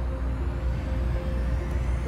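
A steady low rumble, with soft background music playing held notes above it.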